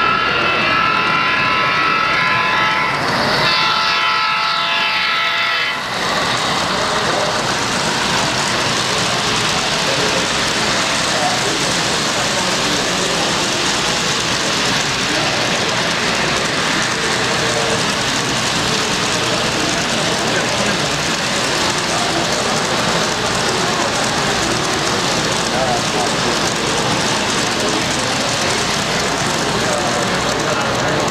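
A sound-equipped model diesel locomotive sounding its multi-note horn for about six seconds, then the steady rolling noise of a long model freight train of boxcars running past.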